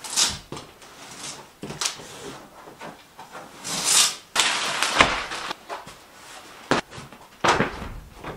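A heavy cloth sofa cover rustling and flapping as it is shaken out and dragged over a sofa, in a string of swishes, with a sudden thump about five seconds in.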